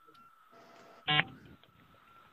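A person's short voiced sound, lasting a fraction of a second about a second in, over video-call audio with a faint steady high hum.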